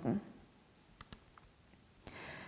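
The last syllable of a spoken word, then near-quiet with three or four faint, short clicks about a second in.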